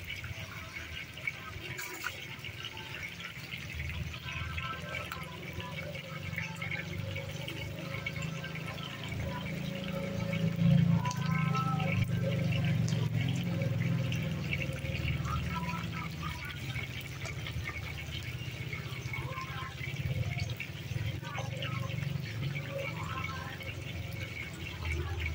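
Battered chicken feet deep-frying in a large wok of hot oil: a steady, busy bubbling sizzle.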